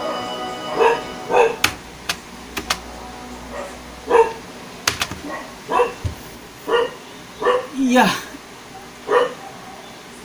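A dog barking repeatedly in the background, short single barks about once a second, with a few faint clicks between them.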